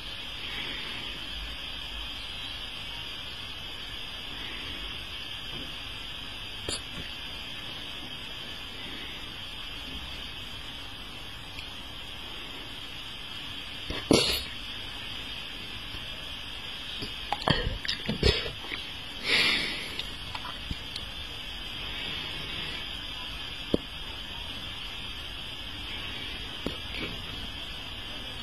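Steady background hiss, broken in the middle by a few short wet clicks from the mouth and one brief breathy puff.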